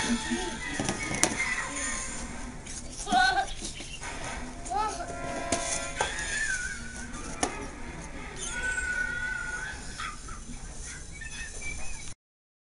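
A toddler's short vocal sounds, with a few light knocks of large toy brick blocks being handled.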